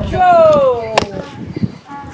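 A woman's high, drawn-out exclamation sliding down in pitch, with a single sharp smack about a second in.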